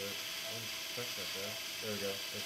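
Powered surgical wire driver running as a Kirschner wire is drilled percutaneously through the radial styloid into the distal radius, an uneven motor whirr that pulses about three to four times a second.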